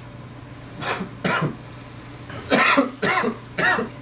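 A man coughing hard, about five coughs in a row, the smoke-irritated coughing that follows a deep hit of hash.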